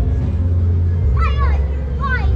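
A child's high voice calls out briefly about a second in, over a steady low rumble.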